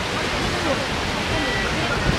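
Sea surf breaking on rocks: a steady rush of water noise, with wind rumbling on the microphone.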